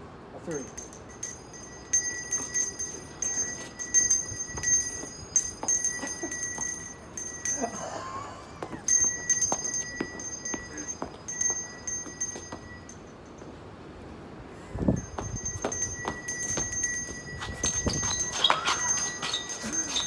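Small handbell shaken continuously in rapid strokes, ringing out clear high tones. It stops for about two seconds about two thirds of the way in, then rings on again.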